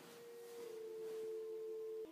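A steady held tone with a fainter, slightly lower tone beneath it. It grows a little louder over the first second, holds, and cuts off abruptly at the end.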